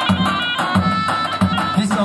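Kurdish folk dance music: a steady drum beat under a high, sustained wind-instrument melody.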